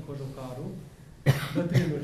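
A man coughs twice, about half a second apart, in a pause in his speech; the first cough is the louder.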